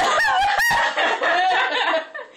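A woman laughing hard in high-pitched, unbroken peals that swoop up and down in pitch, with a brief sharp noise about a third of the way in.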